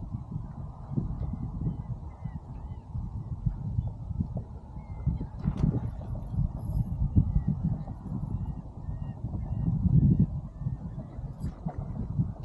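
A low, uneven rumble of wind buffeting the microphone, loudest near the end. Scattered short bird calls sound faintly above it, several in a row about midway.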